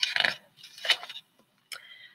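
Page of a large hardcover picture book being turned, the paper rustling in a few short scrapes.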